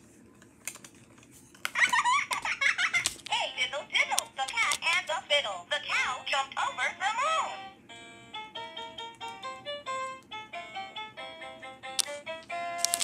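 VTech Rhyme & Discover Book's speaker playing a recorded voice for about six seconds after a button press, then a short electronic tune of quick stepped notes.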